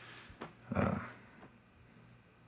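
A man's short, hesitant "uh" about a second in, with a faint breath before it, in a quiet small room; otherwise only low room tone.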